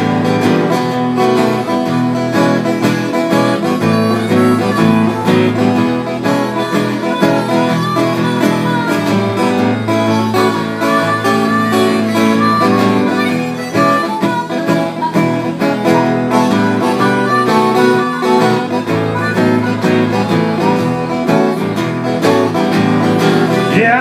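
Acoustic guitar playing an instrumental break in an upbeat country-blues song, a sustained melodic lead line over steady strummed chords.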